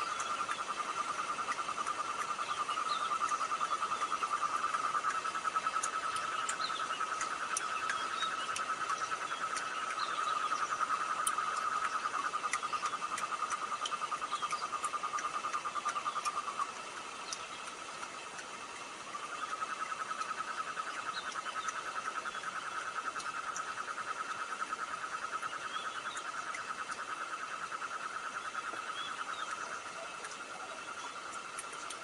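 A chorus of calling animals: a steady, fast-pulsing trill that drops off for about two seconds past the middle and then picks up again, with scattered faint high chirps over it.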